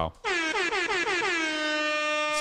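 An air horn sound effect: one long blast that slides down in pitch over its first second, then holds steady.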